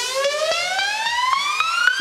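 An electronic sound effect: one buzzy tone gliding steadily upward in pitch without a break, with faint ticks under it.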